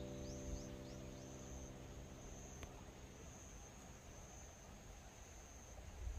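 A faint, steady, high-pitched insect trill in an open field. The held notes of background music fade out over the first couple of seconds, and a few short falling chirps sound near the start.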